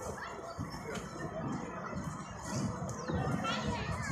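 Children playing and people talking in the background, a continuous murmur of voices with a few high-pitched gliding calls near the end.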